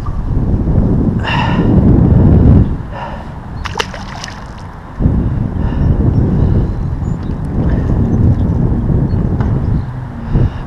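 Wind rumbling on the microphone of a body-worn camera, mixed with handling noise, while a freshly caught pickerel is let back into the water, with a short splash about a second in. The rumble eases for a couple of seconds in the middle and then comes back.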